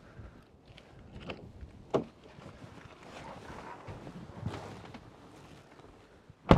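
Faint footsteps and rustling as someone climbs into an SUV, with a few light clicks and one sharp knock about two seconds in.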